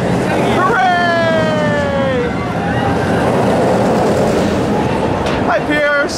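Olympia Looping roller coaster train running through its loops. A long falling scream from riders comes about a second in, then the rushing roar of the train on the track.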